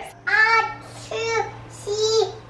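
A toddler's high voice in three short sing-song phrases, a pretend counting chant for hide and seek. A faint steady hum sits underneath.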